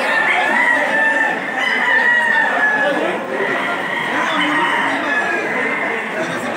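Roosters crowing again and again, several long calls overlapping one another, over the chatter of a crowd of men.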